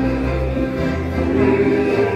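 Live dance band music: guitar and saxophone over a stepping bass line, with long held melody notes.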